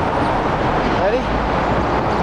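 Steady city street traffic noise, with a deep rumble of passing vehicles that swells in the second half.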